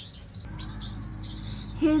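Faint short chirps of small aviary birds over a low steady rumble.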